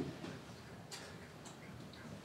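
Quiet room tone between tunes, with a few faint, light clicks.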